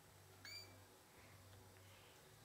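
One brief, high-pitched squeak from a pet albino rat, about half a second in, over near silence with a faint low hum.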